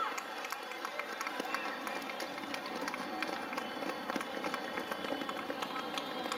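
Quick, irregular footfalls of several sprinters on a synthetic running track, over a background of crowd chatter and distant voices.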